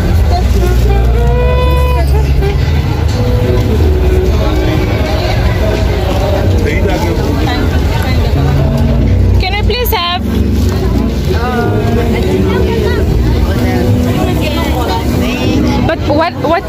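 Busy outdoor market din: people talking and calling out over loud music with a steady deep bass.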